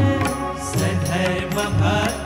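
Hindu devotional kirtan: male voices chanting a namavali, a litany of divine names, with harmonium and hand-drum accompaniment.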